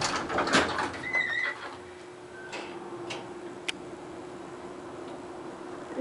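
Elevator car doors sliding shut on an antique Dominion traction elevator, with a brief squeal about a second in. After that a steady hum runs with a few sharp clicks.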